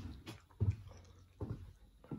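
A few soft, short thumps, about four in two seconds, with faint handling noise between them.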